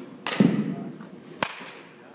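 A dull thud, then about a second later a single sharp crack of a baseball bat hitting a pitched ball in a batting cage.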